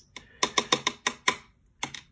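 A quick run of light, sharp clicks or taps, about seven in a second, then one more near the end.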